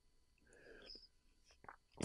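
Near silence: a pause in a man's speech, with faint mouth and breath sounds and a soft click near the end.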